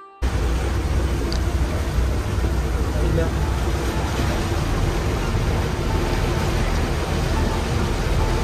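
Motor yacht cruising: a loud, steady rumble of wind and engine with water rushing past the hull. It cuts in abruptly right at the start.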